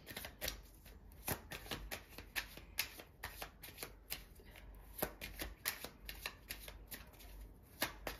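Tarot deck shuffled by hand: a continuous run of soft, irregular card clicks and flutters, several a second.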